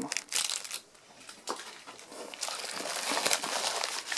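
Plastic film wrapping on packs of fireworks crinkling as they are handled and lifted out of a cardboard box, with a few light knocks. The crinkling pauses briefly about a second in, then grows denser near the end.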